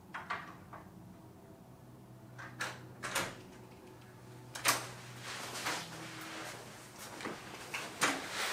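Hotel room door being unlocked and opened: a few sharp clicks of the lock and handle, then a louder knock about four and a half seconds in as the door swings open, followed by faint scattered noises, over a low steady hum.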